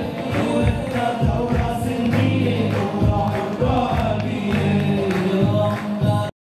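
A group of men singing together into microphones, over a steady beat.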